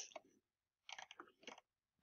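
Near silence, with a few faint soft clicks about a second in.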